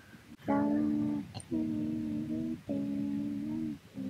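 Three long held notes of wordless humming, each about a second long with short breaks between them, at a steady low pitch. It is an eerie sound that the listeners react to as horrible.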